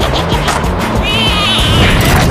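Cartoon soundtrack music with a steady run of bass notes, joined about a second in by a high, wavering cartoon squeal that lasts just under a second.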